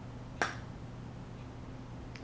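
A metal spoon clinks once against a glass bowl, a short sharp tap with a brief high ring, over a low steady hum.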